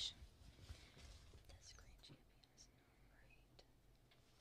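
Near silence: faint background hum with a few soft, scattered clicks.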